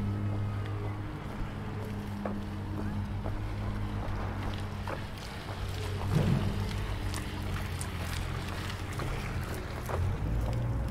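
Outdoor city ambience with a steady low mechanical hum throughout. There are scattered faint clicks and a brief louder knock about six seconds in.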